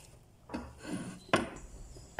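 Faint handling sounds of wet, boiled cassia leaves being squeezed and moved by hand, with one sharp click about a second and a half in.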